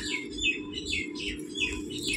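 Small birds chirping repeatedly in the background, a few short falling chirps a second, over a steady low hum.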